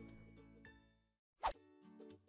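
Soft background music dying away, then a lull broken about one and a half seconds in by a single short pop, a sound effect marking the cut to the next section. Music tones start again just after it.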